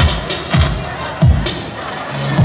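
Live band music played loud through the stage PA, with a strong, punchy low beat.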